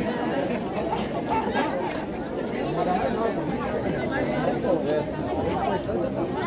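Crowd chatter: many people talking at once, a steady babble of overlapping voices.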